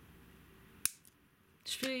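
Wire cutters snipping through a jewellery wire once: a single sharp snip a little under a second in.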